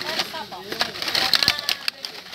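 Plastic-and-card Hot Wheels blister packs clattering and crackling in a cardboard box as a hand rummages through them: a quick run of sharp clicks and rustles that gets busier in the second second. Background chatter runs underneath.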